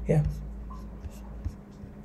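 A few faint, scattered clicks from a computer keyboard and mouse as a search is typed, over a steady low electrical hum.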